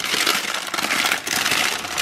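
Parchment paper crinkling and crackling as it is peeled up off a metal baking sheet, the burnt, brittle molasses filling stuck to it cracking away with it.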